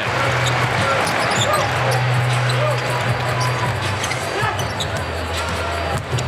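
A basketball dribbled on a hardwood court during live play, over arena crowd noise and music with a steady low note.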